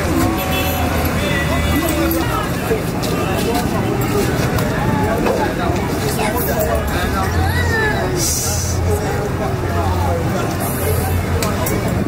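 Several people talking over one another in a continuous babble, with a low, steady rumble of road traffic underneath.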